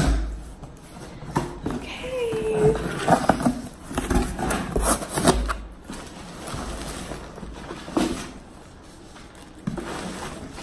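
Cardboard shipping box being opened by hand: flaps pulled back and plastic-wrapped packaging handled, a run of scrapes, knocks and crinkles. A short hum of a voice about two seconds in.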